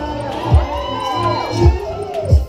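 Music with a heavy bass beat playing in a hall, with a crowd of guests cheering and whooping over it.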